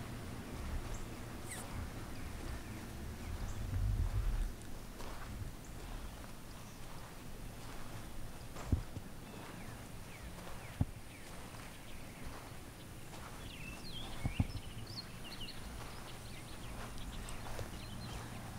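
Outdoor ambience: a low rumble that swells about four seconds in, three sharp clicks spread through the middle, and a few faint high chirps near the end.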